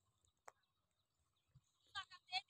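Near silence in an open field, with one faint tick about half a second in and a short pitched call starting right at the end.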